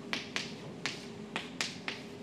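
Chalk on a blackboard being written with: about six short, sharp taps and scrapes in two seconds as the symbols of an equation are drawn.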